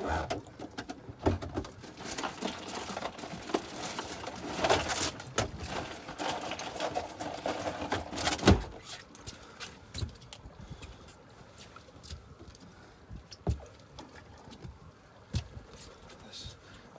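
Rustling and clattering of things being handled, with a sharp knock about eight and a half seconds in, then only scattered light clicks.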